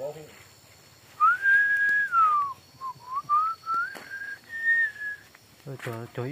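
A person whistling: one clear note that rises and holds, slides down, then climbs back up in steps and holds high, lasting about four seconds.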